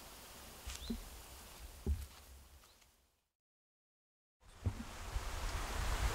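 Quiet outdoor ambience with a faint low rumble and two brief soft knocks. It fades out to complete silence about halfway through, then fades back in.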